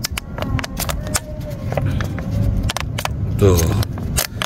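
Plastic water bottle crackling and clicking as it is turned and gripped in the hand, a string of short irregular clicks.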